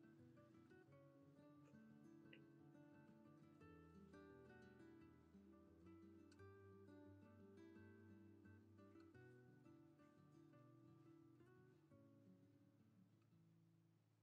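Very faint background music of plucked acoustic guitar, note after note.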